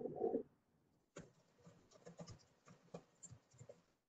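Faint computer-keyboard typing: short, irregular key clicks that start about a second in, after a brief louder sound at the very start.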